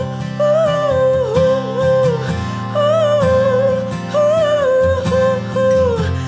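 Pop ballad: a singer holds a wordless "oh oh oh" melody in repeated rising and falling phrases over guitar accompaniment.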